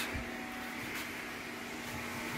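Steady low electrical hum with a faint hiss in a small room, with no distinct events.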